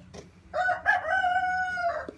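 A rooster crowing once, starting about half a second in and ending in a long held note.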